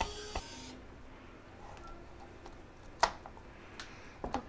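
Small electric precision screwdriver whirring as it backs a screw out of the quad's frame, stopping under a second in. Light handling clicks follow, with one sharper click about three seconds in.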